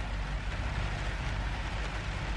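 Steady rain on the roof of a car, heard from inside the cabin, over a constant low rumble.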